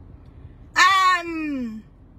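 A single drawn-out vocal call, loud and falling steadily in pitch, lasting about a second and starting a little under a second in.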